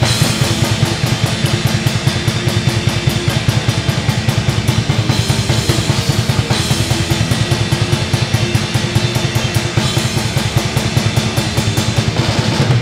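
A death metal band playing live, heard close to the drum kit: a rapid, even stream of bass-drum strokes with snare and cymbal hits, over distorted guitars and bass.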